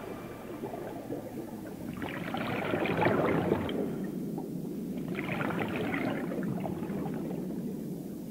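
Scuba diver's exhaled bubbles gurgling out of the regulator underwater, two breaths out, about two and five seconds in, over a low water hiss.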